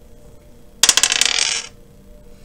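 Astrology dice rolled onto a glass tabletop: a rapid clatter of clicks about a second in, lasting just under a second.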